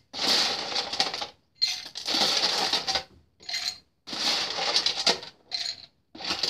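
Ice cubes clattering as they are scooped and dropped into a Boston shaker's metal tin and mixing glass, to chill both parts. The clatter comes in about five rattling bursts, each a second or less long, with short pauses between them.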